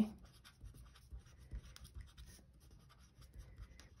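A marker writing on a paper worksheet: faint, short scratchy strokes as a word is written out.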